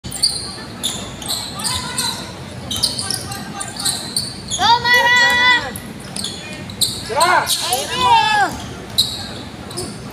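Basketball game sounds: a ball bouncing on a hardwood court and sneakers squeaking, with loud drawn-out shouted calls from players or the crowd around the middle and again near the end.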